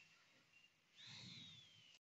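Near silence: faint room tone, with a faint thin high whistle that falls slowly in pitch from about a second in.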